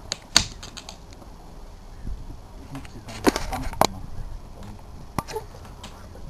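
A few sharp clicks and knocks as the motorboat's blue canvas canopy and its fittings are unfastened and handled. The loudest comes about half a second in, a quick cluster follows a little after three seconds, and one more comes past five seconds.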